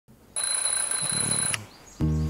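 Alarm clock ringing: a fast, high bell-like rattle that starts about a third of a second in and cuts off suddenly about a second later.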